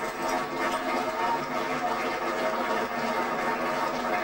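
Folk concert music playing from a television, heard through its small speaker, with held notes running on steadily; the tambourine is silent.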